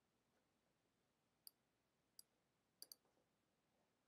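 Near silence broken by four faint computer mouse clicks: single clicks about one and a half and two seconds in, then a quick double click near the three-second mark.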